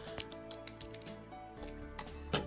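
Scissors snipping a plastic drinking straw: two short sharp clicks in the first half second, over soft background music with held tones.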